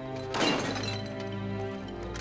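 A sudden smash of breaking glass about half a second in, fading quickly, over background music.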